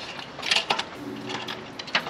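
Irregular metallic clicks and rattles from a road bike being handled and turned upside down for a rear wheel change, about half a dozen sharp clicks spread over two seconds.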